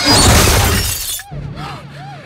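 Car crashing and scraping against a stone wall with glass shattering, loud, cutting off suddenly just over a second in. Then the steady drone of a car engine heard from inside the cabin, with a siren yelping about three times a second.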